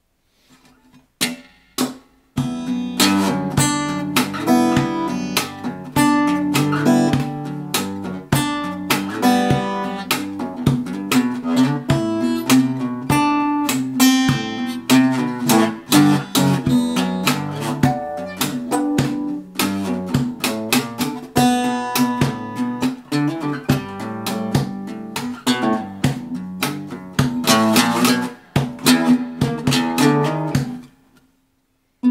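Tanglewood steel-string acoustic guitar played percussive fingerstyle: picked chords and melody with sharp hits on the body standing in for kick drum and snare, in a busy steady groove. Two single hits come about a second in, then the playing runs on without a break from about two seconds in.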